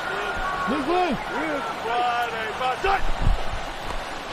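Football players shouting calls at the line of scrimmage before the snap, picked up by field microphones, with a low thump about three seconds in.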